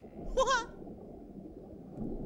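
A short, wavering, bleat-like giggle from a cartoonish character voice about half a second in, followed by a steady, muffled, low rushing noise.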